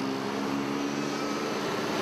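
Road traffic passing close by: motorcycles and cars driving along a city avenue, with a steady engine hum over the tyre and road noise.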